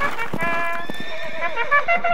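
Horse galloping, a quick run of hoofbeats, with a horse whinnying partway through.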